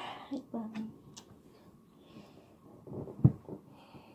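A quiet room with a few brief voice sounds near the start and a single sharp, low thump about three seconds in.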